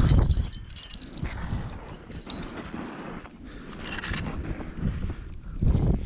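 Gloved hands handling an ice-fishing rod and spinning reel close to a chest-mounted microphone: rustling and light irregular knocks, with a low rumble at the start.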